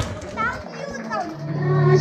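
Chatter in a crowded room with high children's voices rising and falling, then music starts about a second and a half in with low, steady sustained notes.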